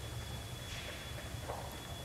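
Quiet room tone: a steady low hum with a faint high-pitched whine, and two faint soft rustles near the middle and toward the end.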